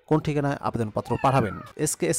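A man narrating in Bengali: continuous speech only.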